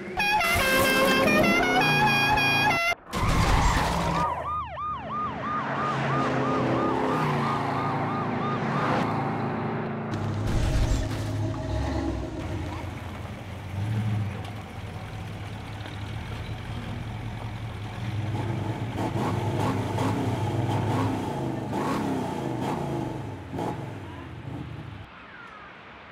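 A short tune of stepped notes, then a police siren warbling for several seconds. After that comes a long stretch of car engine noise, with the orange Dodge Charger sliding on gravel.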